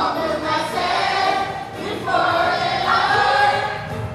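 A small choir of children and young people, led by a woman, sings a church song into microphones in long held phrases. A new phrase begins about two seconds in.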